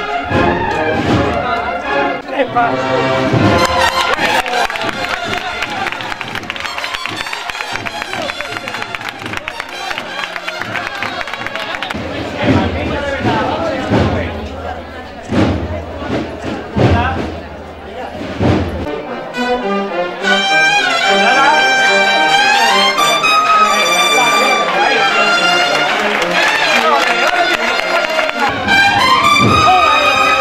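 Brass band playing a slow processional march, with trumpets carrying a clear melody in the second half.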